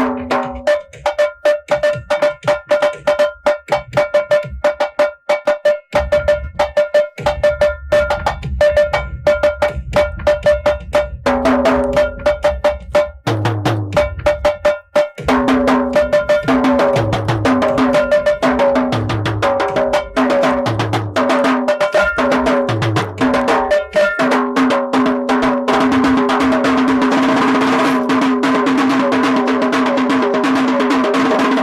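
A set of small tuned chrome-shelled drums played fast with sticks as a solo. The strokes ring at a few distinct pitches, with deeper drum hits among them, and they quicken into a continuous roll over the last few seconds.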